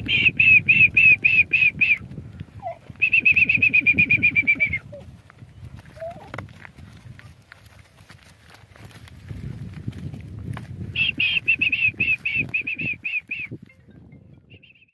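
A person whistling short, quick, high notes over and over in three bouts: a run at the start, a faster trill from about three seconds in, and another run from about eleven seconds in. Each bout comes with a low rumble of breath or wind on the microphone.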